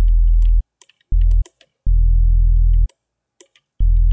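Sub bass from FL Studio's Sytrus synthesizer: four separate very low notes at the same pitch, the third held about a second and the others shorter, each starting and stopping cleanly. Faint mouse clicks fall between the notes.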